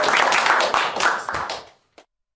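Audience clapping at the end of a talk, a dense patter of many hands with a few spoken words over it, stopping abruptly shortly before the end.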